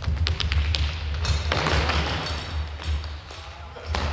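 Futsal ball touches and running footsteps on a wooden gym floor: a quick series of taps and thuds in the first second, then a stretch of hissy noise, over a low rumble throughout.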